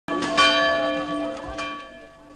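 Church bell ringing: three strikes, the second the loudest, each leaving a long ringing tone that slowly fades.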